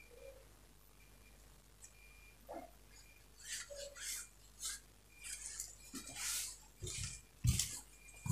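Fabric and its lining being handled and flipped over on a cloth-covered table: short rustles from about halfway, then a few dull knocks near the end as the cloth is lifted and set down.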